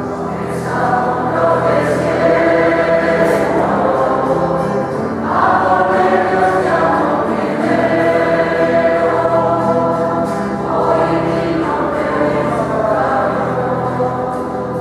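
A choir singing a slow church hymn in long, held phrases that swell and fade every few seconds.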